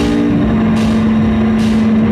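Live rock band playing an instrumental passage: a long held note over a steady beat, with a hit about every 0.8 seconds and electric bass guitar underneath.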